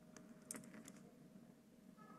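Faint typing on a computer keyboard: a handful of light key clicks, mostly in the first second, over near-silent room tone.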